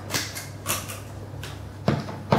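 Handling noise from a semi-acoustic electric guitar being put on by its strap: a few short rustles and knocks, over a steady low hum from the plugged-in guitar amplifier.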